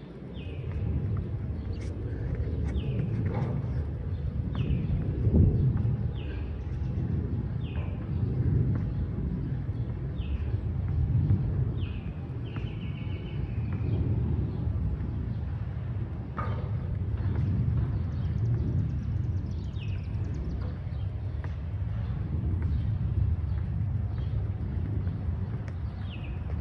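A bird calling repeatedly with short, high, falling chirps, about one a second, with a brief trill about halfway through. The calls sit over a steady low outdoor rumble, and there is a single knock later on.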